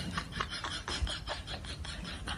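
A rubber balloon rubbing against a cat's fur and the carpet as the cat walks with it between its hind legs: a quick, even series of short rasping rubs, several a second.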